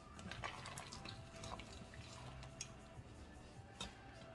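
Soup being stirred in a stainless steel stockpot with a long metal spoon: faint sloshing of liquid and scattered light clicks of the spoon against the pot, the sharpest click near the end.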